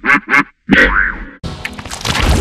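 Warped, effect-processed cartoon sound effects: two quick wobbling pitched sounds, a brief gap, a sliding tone about a second in, then a rougher, noisier stretch near the end.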